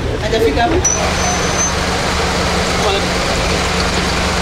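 Busy roadside sound: vehicle engines running steadily under a wash of traffic noise, with people's voices talking near the start and a brief high thin tone about a second in.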